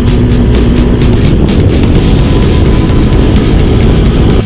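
Dirt bike engine running hard under throttle, heard through the onboard camera, with heavy rock music underneath.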